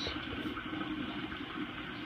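Steady rush of circulating water with a faint steady hum from the reef aquarium's pumps.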